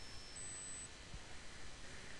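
Faint steady background hiss with a thin, high-pitched electronic whine that jumps up in pitch about a third of a second in and stops about half a second later; a soft low bump a little past halfway.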